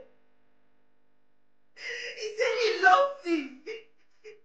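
A woman's voice whimpering without words, starting about halfway in and lasting about two seconds, its pitch dipping near the end.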